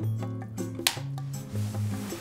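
A film clapperboard snapped shut once, a single sharp clap a little under a second in, over background music with steady bass notes.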